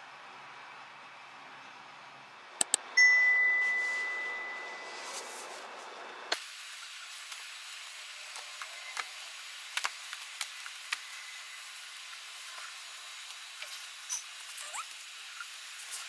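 Two quick clicks, then a single bright ding that rings and fades over a couple of seconds. After that come scattered soft taps and clicks of manga volumes being picked up and moved on a shelf cart.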